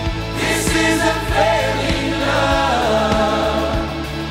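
Contemporary worship song: voices singing over a band with held chords, the bass moving to a new chord about halfway through.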